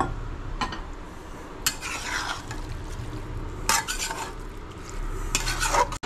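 Spatula stirring and scraping banana-flower and prawn curry in a steel pan, in several strokes about every two seconds. A faint sizzle of the curry cooking with a little added water lies underneath.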